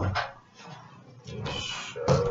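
Interior door latch clicking as the door is opened, followed near the end by a louder, scratchy sound with a faint held tone.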